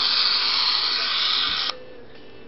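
Loud steady static hiss from the WG9 Vivaz replica phone's built-in analog TV receiver, playing through its loudspeaker while the picture shows only snow: no clear station is being received. It cuts off suddenly with a click a little before the end as the TV is closed.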